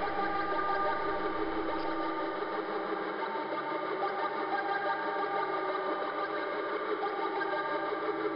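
Korg Monotron Delay analog synthesizer sounding a steady, buzzing drone of many held tones, its lowest notes thinning out for a couple of seconds partway through.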